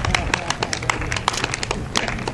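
Several spectators clapping, scattered sharp claps several a second, with a laugh at the start and voices behind.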